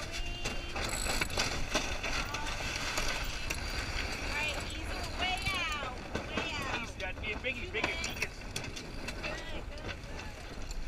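Sailboat sheet winch being worked during a tack: rapid ratchet clicking and high, squeaky sliding tones as the sheet is hauled in on the drum. A steady low wind rumble runs underneath.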